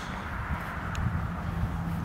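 Low, uneven outdoor rumble from a handheld camera carried at a walk across grass, with one faint click about a second in.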